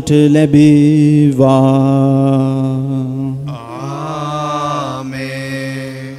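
Liturgical chant at a Catholic Mass: a sung response in two long held notes, the first held about three and a half seconds, the second wavering with vibrato.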